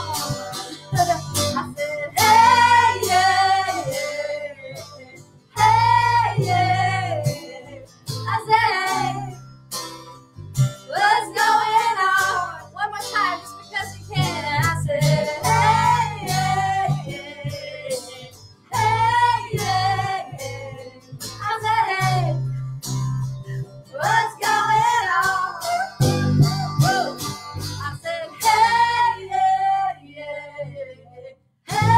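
Women's voices singing a chorus together over strummed acoustic guitar, with a steady low bass line under it.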